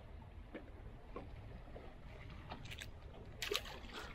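Faint wind and water noise around a small boat, with a few light clicks and taps of handling a fish and lure. The loudest tap comes about three and a half seconds in.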